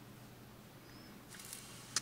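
Faint handling of yarn over a steady low hum: a brief soft rustle about a second and a half in, and a small click at the very end.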